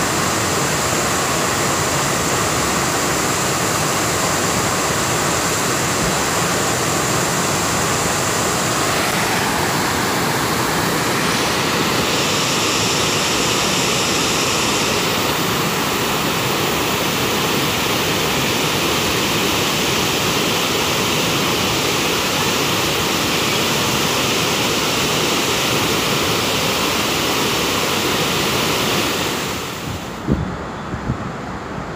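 Reservoir water pouring over a dam's overflowing spillway and cascading down its concrete steps: a loud, steady rush that eases near the end.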